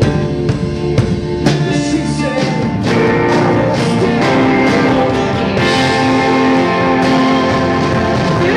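Live rock band playing: electric guitars and drum kit with a male voice singing. The first few seconds carry sharp drum strokes, and the band grows fuller and a little louder about three seconds in.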